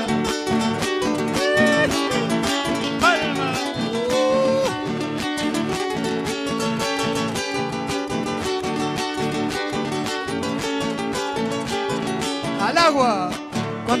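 Three acoustic guitars strumming a lively gato, an Argentine folk dance rhythm, in an instrumental passage. Short vocal cries come about three seconds in and again near the end, where singing begins.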